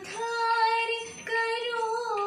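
A woman singing a devotional song solo, holding long, slightly wavering notes in two phrases with a short breath break a little over a second in.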